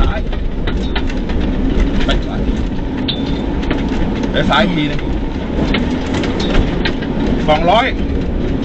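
Rally car driving hard on a gravel stage, heard from inside the cabin: a steady engine drone that changes pitch about halfway through, mixed with tyre and road noise and frequent sharp clicks and knocks from the rough dirt track.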